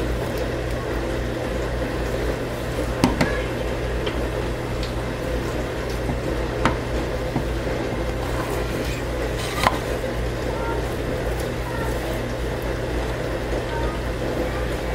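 Steady low hum with a few light clicks and knocks of a silicone spatula against plastic cups while soap batter is stirred and scraped.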